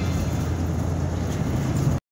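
Steady low rumble of road and traffic noise heard from inside a moving vehicle on a highway, with a tractor-trailer running alongside.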